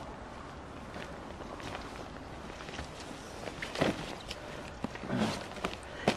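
Footsteps and the rustling of a quilted external windscreen cover being unfastened and pulled off a motorhome's cab, with one louder rustle about four seconds in.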